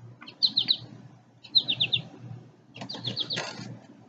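A songbird singing a short phrase of three or four quick, high notes, repeated three times about once a second.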